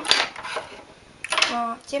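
A brief metallic clink of knitting-machine transfer tools (deckers) being handled and put aside.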